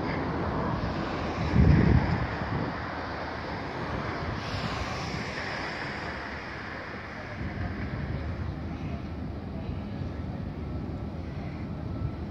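Outdoor harbourside ambience dominated by wind buffeting the microphone, with a strong low gust about one and a half seconds in, over a steady background rumble.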